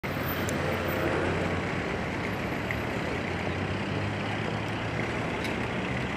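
Steady street traffic noise with a low engine hum running under it.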